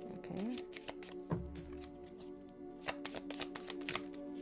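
Tarot cards being shuffled and handled, a run of sharp papery clicks, over soft background music with held tones. A low thump a little over a second in.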